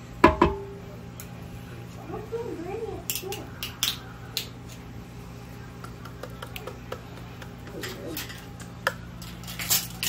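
A metal can knocking and scraping against a stoneware crock-pot insert as canned green chilies are emptied into it: one sharp knock just after the start, then scattered light clicks and taps.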